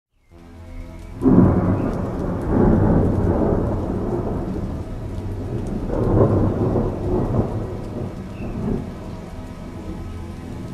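Thunderstorm: rolling thunder over steady rain, with a loud clap about a second in and another swell of rumbling around six seconds.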